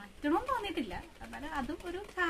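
Speech only: a woman talking in a sing-song voice with no other clear sound.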